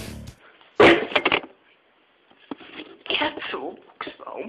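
Rock music cuts off right at the start, then voices in a small room: a loud outburst about a second in and more talk about three seconds in.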